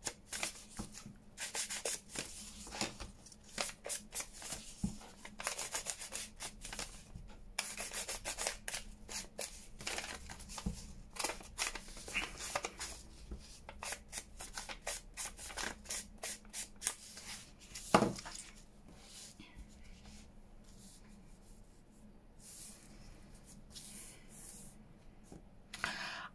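Foam ink blending tool rubbed in quick, repeated scratchy strokes along the edges of a sheet of paper, inking them. A single sharp knock comes about two-thirds of the way through, and after it the rubbing dies away.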